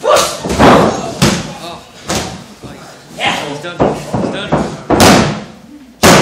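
Wrestlers' bodies hitting the ring mat: a run of heavy thuds and slams about half a second to a second apart, with the ring boards ringing briefly after each, mixed with shouting.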